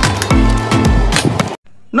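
Background music with a deep bass beat, each bass note sliding down in pitch, under sharp percussion taps; it cuts off suddenly about one and a half seconds in.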